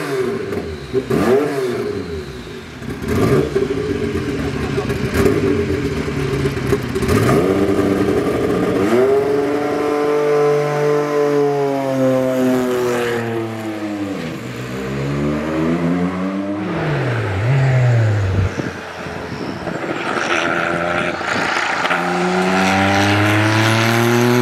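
Porsche 962 Group C race car's twin-turbocharged flat-six engine revving. It starts with short throttle blips, then runs through longer rev climbs and drops. There are steep falls in pitch in the middle, and it climbs again near the end.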